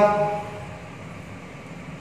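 A man's drawn-out spoken word trails off in the first half-second, followed by faint, steady room noise.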